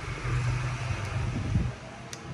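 Low, steady mechanical rumble in the background.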